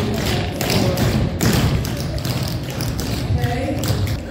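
Tap shoes striking a wooden floor: many dancers' metal taps clattering in quick, unevenly spaced strikes.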